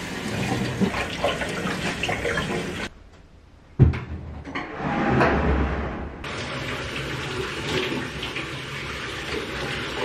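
Kitchen tap running onto blueberries in a mesh strainer. After a short quiet gap comes a single thump, and then a shower runs steadily.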